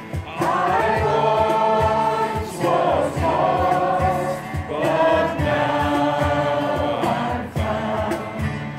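A small group of mixed voices singing a hymn together, accompanied by strummed acoustic guitars, in long held phrases with brief breaths between.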